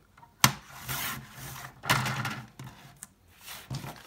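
Sliding-blade paper trimmer cutting card: a sharp click about half a second in as the blade carriage is pressed down, then the blade scraping along the rail through the card, and paper rustling as the cut sheet is lifted off.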